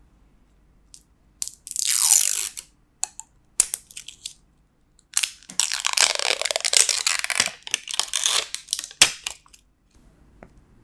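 Plastic shrink-wrap seal being crinkled and torn off the cap of a glass sauce bottle, in two long crackling stretches with scattered clicks between.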